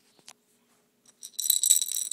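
A baby's hand-held rattle toy shaken quickly, a dense jingling rattle that starts about one and a half seconds in, after a single click.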